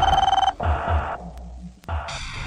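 Electronic telephone ringing, a steady single-pitched tone that cuts off about half a second in. A short stretch of noise follows, then a sharp click near the end.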